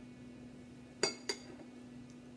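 Two light clinks of a metal fork against a glass pepper jar, a quarter second apart, each with a short ring.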